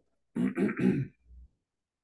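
A man clearing his throat with a short cough: three quick rasping pushes within about a second.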